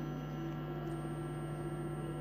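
Steady low electrical hum with no ball strikes, and a faint high-pitched whine that joins about a second in.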